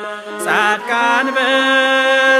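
Ethiopian Orthodox Tewahedo hymn (mezmur) sung in long, drawn-out notes over a steady low accompanying note. There is a brief breath-like dip near the start, then a new phrase slides in and is held.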